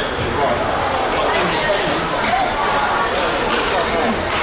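Badminton hall ambience: a steady murmur of indistinct voices with several sharp knocks from play on the courts.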